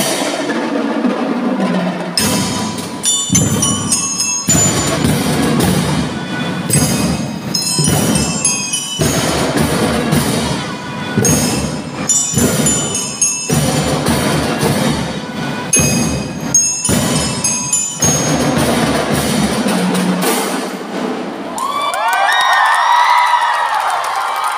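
Marching band playing: a driving drum beat with bell-like mallet percussion on top. About 21 seconds in the music stops and the audience breaks into cheering and shouting.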